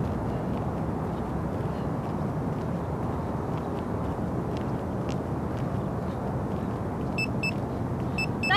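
Steady low outdoor background rumble, with a few short high electronic beeps about seven seconds in.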